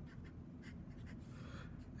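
Faint strokes of a Sharpie felt-tip marker writing on paper.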